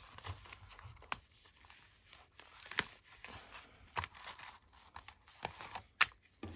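Paper rustling and a few sharp ticks as a handmade paper journal is handled and slid out from under the elastic of a travel wallet.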